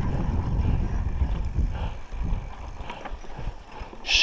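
Raleigh MXR DS 29er mountain bike rolling over a rough dirt road: a low rumble of tyres and wind on the camera's microphone, with scattered knocks and rattles from the bike over bumps. The rumble eases about halfway through.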